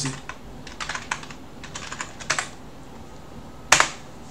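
Computer keyboard being typed on: a handful of separate keystrokes, then one louder key press near the end.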